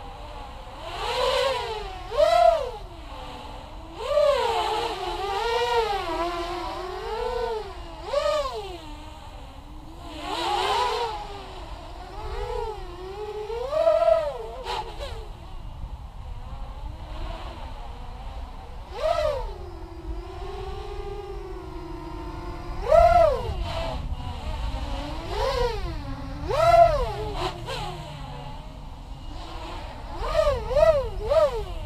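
Racing quadcopter's four KDE 2315 brushless motors and 6-inch propellers whining in flight. The pitch rises and falls with about a dozen sharp throttle punches, loudest near the top of each. A steadier, lower hover tone holds for a few seconds about two-thirds of the way through.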